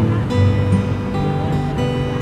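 Acoustic guitar music with held notes.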